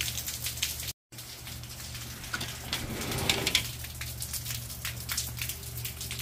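Steady rain falling on a wet patio and garden, with many separate drops striking. The sound cuts out completely for a moment about a second in.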